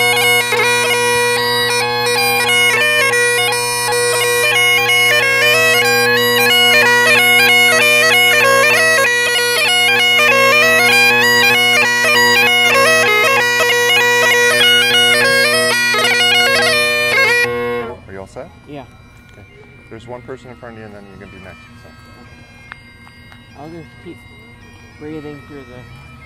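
Great Highland bagpipe playing a melody of fast-changing chanter notes over its steady drones, then stopping abruptly about eighteen seconds in. Faint voices follow.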